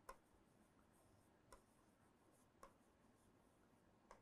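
Near silence with three faint, isolated clicks, fitting a stylus tapping on a tablet screen while writing.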